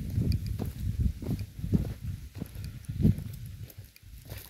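Footsteps walking on dry, cracked earth: a run of uneven dull thuds, about two a second.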